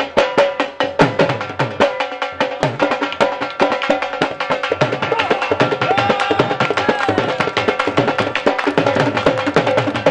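Dhol drums played together with sticks in a fast, dense rhythm. The bass-head strokes drop in pitch after each hit under the sharp treble-stick hits.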